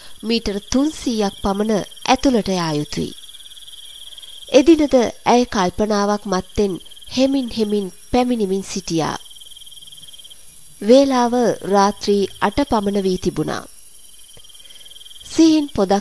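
Crickets chirping in a steady high drone, under spoken narration that stops for pauses of about a second or two.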